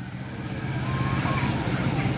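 Street traffic: a motor vehicle's engine running with a steady low hum.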